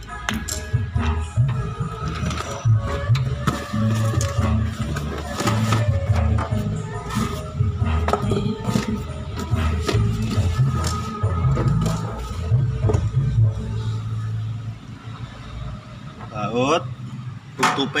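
Background music with a heavy, steady bass line, with scattered short clicks and knocks over it. A man's voice comes in near the end.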